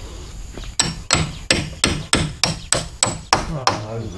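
A hammer striking a joint of the wooden hut frame. About ten even blows, roughly three a second, start about a second in.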